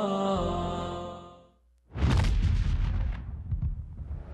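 Programme intro music of held synth notes, fading out about a second and a half in. After a brief near-silence comes a sudden loud, deep impact sound effect with a crackling tail that dies away over the next second and a half.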